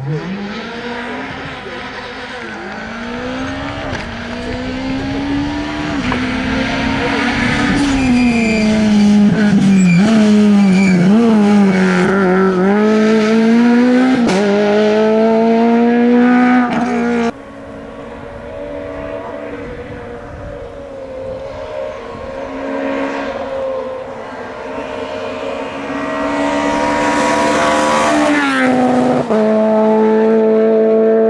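Peugeot 208 VTi R2 rally car's 1.6-litre naturally aspirated four-cylinder engine revving hard at full throttle, its pitch climbing and dropping again and again through gear changes and lifts. About 17 seconds in the sound cuts suddenly to a quieter pass that builds back up near the end.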